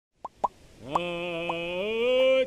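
Two short plops, then a man's voice begins a long held chanted note about a second in, stepping up in pitch near the end.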